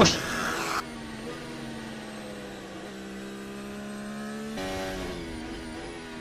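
Formula 1 car's turbocharged V6 hybrid engine running at a steady high pitch, heard through the team-radio audio, with slow small rises and falls in its note. A short burst of radio hiss comes first, and the engine note shifts up about four and a half seconds in.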